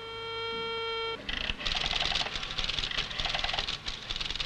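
Telephone dial tone held steadily for about a second, then cut off as the rotary dial is turned. It gives way to rapid mechanical clicking and rattling from the dial and the electromechanical exchange selectors stepping as the number goes through.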